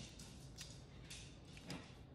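Nearly quiet room with three faint, light clicks, the last one near the end slightly stronger.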